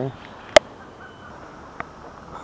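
A single sharp click about half a second in, and a fainter tick near the end, over a low steady hiss of outdoor background.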